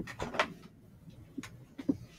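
A handful of short, sharp clicks and knocks over faint room noise, the loudest right at the start and a little later, with a couple more near the end.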